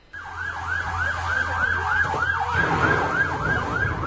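A siren in a fast rise-and-fall yelp, about three to four cycles a second, starting abruptly, over a low steady hum.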